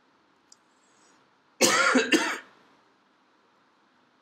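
A man gives a short cough about one and a half seconds in, loud against near-silent room tone.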